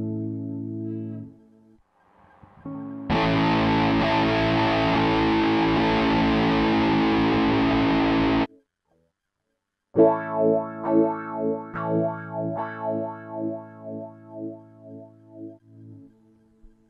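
Electric guitar played through a B6 mini amp's built-in effects. A flanged chord rings out and fades in the first second or so. Then a loud, dense strummed chord with overdrive distortion is held for about five seconds and cut off, and after a short silence a run of single picked notes follows at about two a second, dying away near the end.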